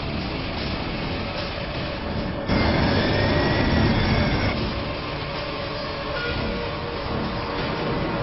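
Loud, rumbling vehicle noise mixed with background music, which jumps up in loudness about two and a half seconds in. A faint whistling tone rises and falls in the middle.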